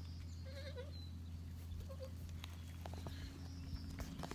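Goats bleating faintly, two short bleats about half a second and two seconds in, over a low steady hum.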